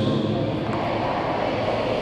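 A large electric pedestal fan running close to the microphone, giving a steady rushing noise.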